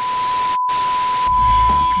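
Television static hiss over a steady high test-pattern beep. The hiss drops out for an instant about half a second in, then stops after about a second, leaving the beep alone.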